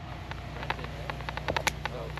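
A run of small, irregular clicks and crackles, sparse at first and coming thicker in the second second, over a steady low hum.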